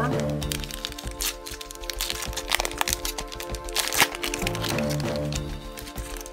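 Plastic and foil booster-pack wrapper crinkling and crackling in the hands as the pack is torn open and the cards are slid out, in irregular sharp bursts, the loudest about four seconds in. Background music plays steadily underneath.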